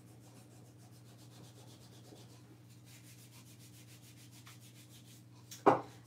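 Fingertips rubbing softened paper off a wooden block to uncover a Mod Podge reverse photo transfer: faint, quick, even strokes. A single sharp knock near the end.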